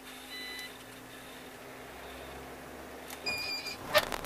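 Two short electronic beeps in a truck cab, the first about half a second in and a higher-pitched one near the end, over the low steady hum of the truck's idling engine as the driver gets ready to pull away.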